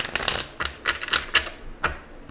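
A deck of tarot cards being shuffled by hand: a quick flutter of card edges at the start, then single sharp snaps and taps of the cards every quarter to half second.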